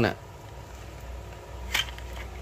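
A single short click near the end, made while a carbon surf fishing rod with a plastic reel seat is handled, over a low steady room hum.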